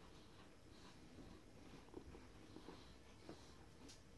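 Near silence: room tone, with a few faint soft ticks of people chewing shortbread.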